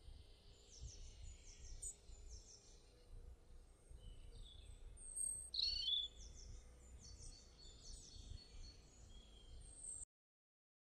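Faint birds chirping: two runs of quick, repeated, high falling notes, with one louder call about five and a half seconds in, over a steady low background hum.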